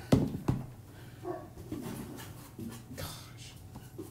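Trading-card pack wrapper being handled and torn open by hand: two sharp crackles near the start, then quieter scattered rustling.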